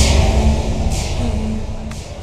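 A sudden loud music sting or dramatic sound effect: a deep booming hit with a crash-like hiss on top. A second swell comes about a second in, and the sound fades over about two seconds.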